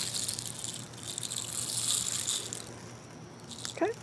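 Birdseed sprinkled by hand onto a peanut-butter-coated pine cone: a hissing patter of falling and rubbed seed that fades out a little over halfway through.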